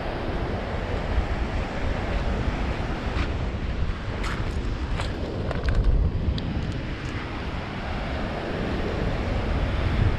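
Wind buffeting the microphone over steady ocean surf. From about three to seven seconds in, a few light clicks as seashells are picked up and handled.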